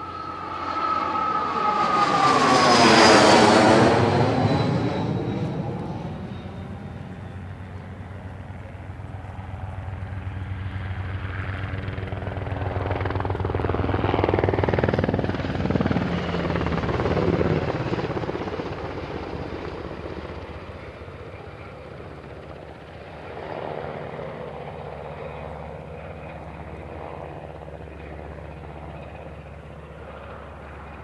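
Aircraft flying low past the microphone. The engine pitch falls sharply as it goes by about three seconds in. The sound swells again and fades in the middle and near the end.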